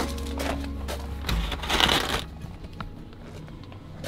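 Thin plastic clamshell food containers crackling and rattling as they are carried and set down, in two noisy spells in the first half, over quiet background music.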